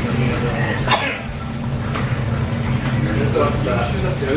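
Eatery background: a steady low hum under background music with a regular beat, with a single sharp knock about a second in.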